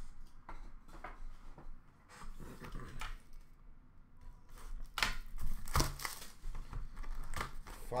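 Plastic card wrappers and cardboard being handled: rustling and crinkling with light clicks and a few scissor snips, busier and louder from about halfway through.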